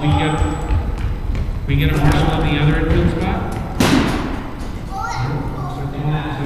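Indistinct voices talking in a large, echoing gym hall, with one loud, sharp thump about four seconds in.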